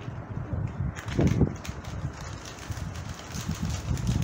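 Plastic and foil snack packets crinkling and rustling as they are handled and torn open, an irregular crackle of many small sounds, busier from about a second in.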